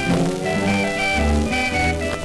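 Instrumental passage from a 1928 Victor 78 rpm record: a small country-jazz band of cornet, clarinet, guitar, steel guitar and string bass playing, with the string bass notes heavy and booming in the low end.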